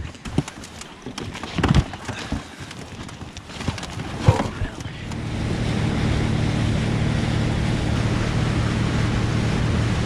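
A boat motor drives an inflatable boat at speed: a steady low drone with water rushing along the hull and wind on the microphone, starting about halfway through. Before that come a few seconds of scattered knocks and handling sounds.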